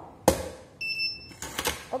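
A sharp plastic-and-metal click as the electronic rim gate lock's cover is handled, then one short high electronic beep from the lock's buzzer about a second in, followed by a few lighter clicks.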